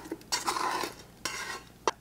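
Bread dough being tipped out of a stainless steel mixing bowl into a plastic tub: two stretches of soft scraping and rubbing, with a light knock near the start and another just before the end.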